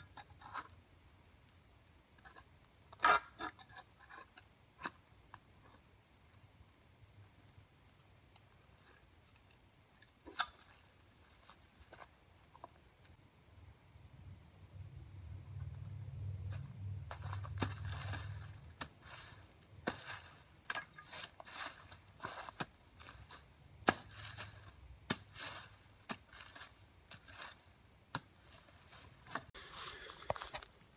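A hand tool striking and scraping into leaf litter and soil as ground is cleared, in scattered sharp knocks with leaves crackling, coming thicker near the end. A low hum sounds for a few seconds midway.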